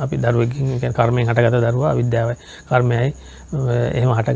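A man speaking Sinhala in connected phrases, pausing briefly twice, with a faint steady high-pitched trill underneath.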